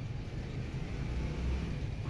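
Steady low rumble of outdoor background noise, with no distinct knocks or scrapes.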